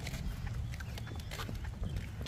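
Wagon stroller's wheels rolling over an asphalt road: a steady low rumble with irregular light clicks and rattles.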